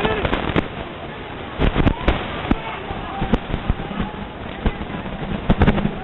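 Street clash between police and protesters: shouting voices and commotion, broken by many irregular sharp cracks and knocks.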